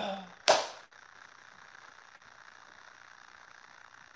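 A man's single short, sharp gasp of breath about half a second in.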